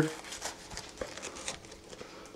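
Chef's knife sawing through a pan-toasted rye-bread sandwich on a wooden cutting board: faint crunching of the crisp crust, with a few light clicks.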